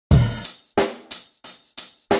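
Drum intro of a hip hop instrumental. It opens with a heavy kick-and-cymbal hit, then four more drum-and-cymbal hits come about three a second, each ringing off before the next.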